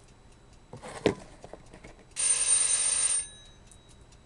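A bell rings once for about a second, a loud, dense ring with high tones that linger briefly after it. A sharp knock comes about a second in, and a faint, regular ticking runs underneath.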